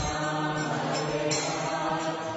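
Devotional mantra-chanting music with voices on long held notes, playing as background music.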